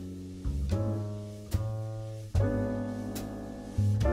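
Slow, calm instrumental music: notes struck roughly once a second and left to ring and fade, over strong low bass notes.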